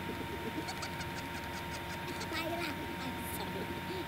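Faint voices from the cartoon episode's soundtrack, under a thin steady high tone.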